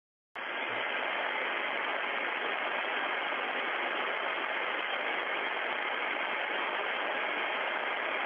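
Steady hiss of background noise on an open audio feed, cutting in abruptly just after the start and holding level throughout.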